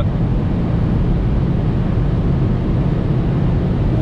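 Interior noise of a VW Golf GTI Performance (Mk7.5) at about 210–220 km/h and still accelerating: a steady, loud low drone of road and wind noise, with the turbocharged four-cylinder engine staying in the background.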